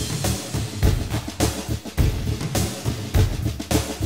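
Recorded music with a drum passage: bass and snare drum beating out a quick, steady rhythm, with little melody over it.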